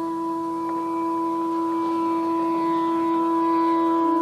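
Background score: a single long held note, steady in pitch, slowly swelling louder.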